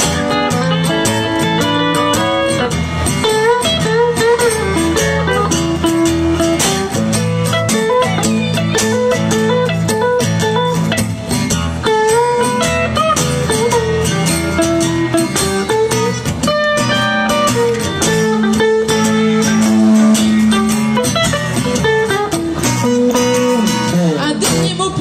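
Instrumental break of a live song: an electric guitar plays a lead line with bent notes over a strummed acoustic guitar.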